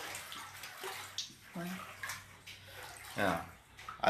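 Floodwater splashing inside a house, with a brief voice about three seconds in.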